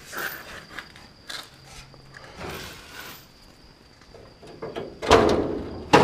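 Hood latch of a 1969 Plymouth Barracuda being worked by hand from under the front bumper: faint metallic scraping and clicks, then a sudden loud clunk about five seconds in as the latch lets go and the hood pops.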